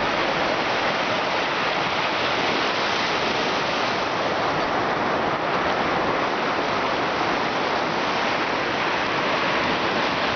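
Ocean surf breaking and washing up a sandy beach, a steady rushing hiss with no letup.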